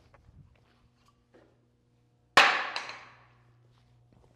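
A glued wooden butt-joint test piece thrown hard in a strength test, hitting the concrete shop floor about two and a half seconds in with one sharp, loud crack that echoes for about a second. A few faint knocks of wood being handled come before it.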